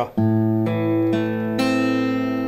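Steel-string acoustic guitar fingerpicking an A minor chord in a thumb-index-middle-ring (p-i-m-a) pattern. The open low A bass on the fifth string comes first, then the fourth, third and second strings, one by one rising, about two notes a second. Each note rings on under the next.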